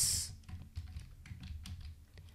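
Computer keyboard typing: a run of soft, irregularly spaced keystrokes.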